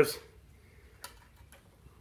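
Near-quiet room tone with a single faint, short click about a second in.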